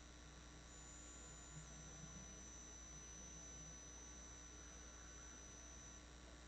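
Near silence: faint steady hiss and a low hum of the recording's background noise.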